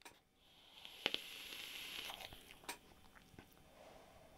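Faint hiss of a long draw on a vape mod with a rebuildable dripping atomiser (Dead Rabbit V2) fired at about 50 watts: air and vapour drawn through the atomiser for about a second and a half, with a few small clicks.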